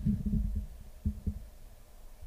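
Faint low rumble and a few soft, dull knocks from handling the devices on the desk, fading toward the end.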